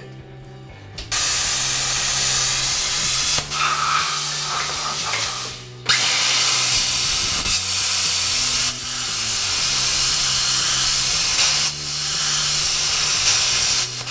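Plasma cutter gouging out a weld on a steel floor jack: a loud, steady hiss of the cutting arc and air jet. It starts about a second in and runs with a few short dips, one near the middle.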